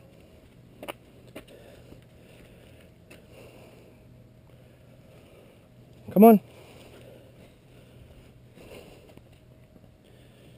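Faint, steady background with a low hum, two small clicks about a second in, and a man calling "come on" once, a little past the middle.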